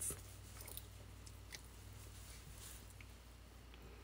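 Near silence: room tone with a faint, steady low hum and a few faint, scattered ticks.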